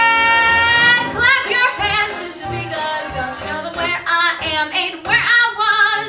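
A woman belting a show tune solo: a long held note with many overtones for about the first second, then further sung phrases with a wide vibrato, swelling loud again near the end.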